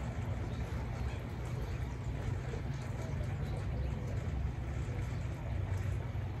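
Steady low outdoor background rumble with no distinct events.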